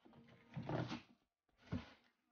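Plastic packaging rustling and cardboard scraping as a bagged part is pulled out of a box, in two bursts: a longer one in the first second and a short one near the end.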